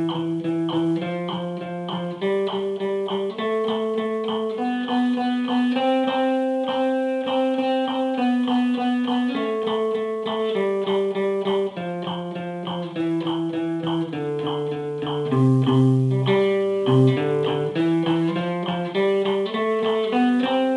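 Archtop guitar played with a pick: a single-note eighth-note reading exercise at a steady, even pace, with down- and up-strokes alternating.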